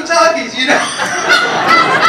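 Loud, hearty laughter into a handheld microphone, coming through the hall's sound system.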